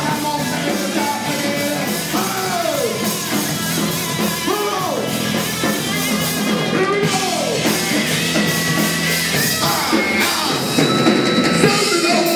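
Live funk band playing, with drum kit, and a lead line that arcs up and falls in pitch several times.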